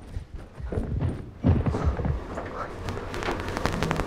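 Hurried footsteps with scuffing and rustling. In the second half the steps turn into a fast run of sharp clicks.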